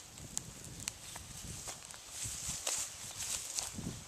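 Footsteps on dry, crumbly garden soil and grass: irregular soft thuds with light rustling and a faint hiss in the background.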